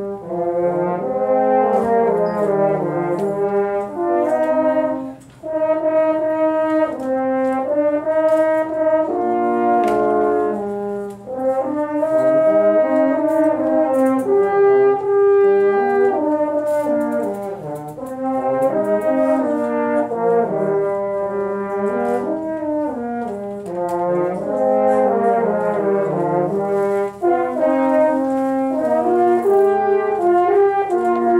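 A trio of French horns playing a piece together, several parts moving at once in harmony, with short breaks in the sound about five and eleven seconds in.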